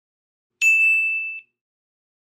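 A single bright, bell-like ding sound effect, struck once about half a second in and ringing on one high tone for under a second before fading away.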